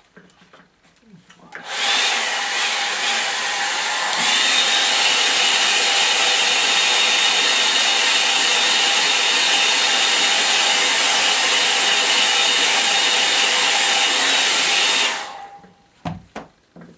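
Hand-held hair dryer blowing to dry wet watercolour paint. It starts about a second and a half in and gets louder with a thin whine about four seconds in. It runs steadily and cuts off about a second before the end.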